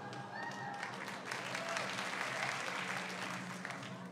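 Audience applauding, swelling about a second in and easing off near the end.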